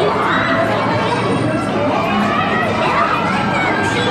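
Many voices of teacup-ride riders shouting and squealing at once, with overlapping squeals sliding up and down in pitch throughout.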